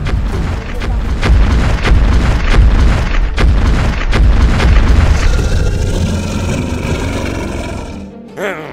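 Film sound effects for a giant dinosaur: a loud, deep booming rumble broken by repeated sharp, heavy thuds. Just past the middle a steady higher tone comes in, and the rumble slowly fades.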